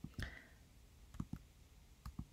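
A few faint, short clicks over quiet room tone: one about a fifth of a second in, then two close together just past the middle.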